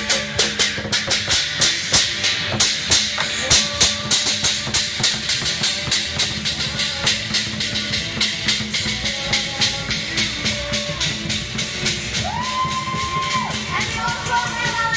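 Loud percussion-driven parade music: a rapid run of sharp drum strikes, about four a second, thinning out in the second half over a steady musical backing.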